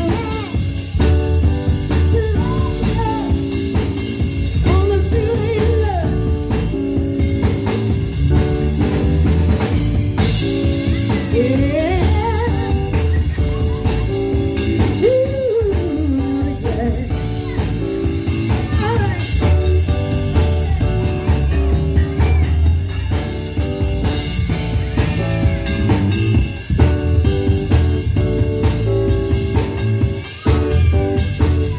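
Live band playing a blues number: drum kit, keyboard and guitar with a woman singing over it, the melody bending and sliding in pitch.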